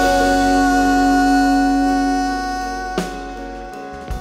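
Live acoustic rock band: a male singer holds one long, steady high vowel over a sustained guitar chord and a low held note, all slowly fading, with a single sharp drum hit about three seconds in.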